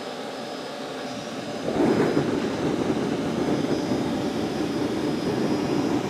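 Forced-air propane forge burner lighting off: the steady hiss of the blower air and torch jumps, nearly two seconds in, to a louder, steady rushing burn. The burn is a little uneven, what the maker calls struggling, a sign of too little gas pressure from the tank regulator and an air-fuel mixture not yet right.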